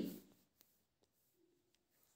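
Near silence with a few faint taps and rubs: a finger drawing on a phone touchscreen.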